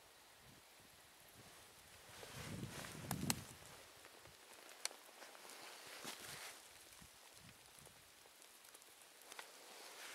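Faint handling noise: soft rustling with a few sharp clicks about two to three seconds in, then a few single small clicks, as a handheld camera is shifted. Under it is a faint steady outdoor hiss.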